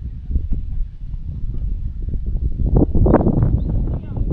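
Wind buffeting an outdoor camera microphone, a continuous low rumble with scattered faint knocks. It grows louder and brighter about three seconds in.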